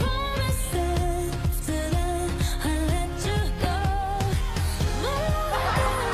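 Chinese pop song playing in the background, a sung vocal line of held, wavering notes over a steady beat.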